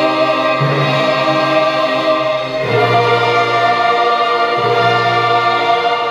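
A choir and orchestra performing classical music from a concert recording, holding sustained chords that change about two and a half seconds in and again near five seconds.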